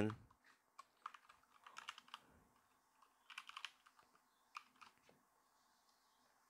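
Faint computer keyboard typing: a few short runs of keystrokes with pauses between them.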